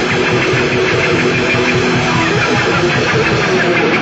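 Electric guitar, a sunburst Stratocaster-style instrument, played loud with a quick run of notes in a live rock performance.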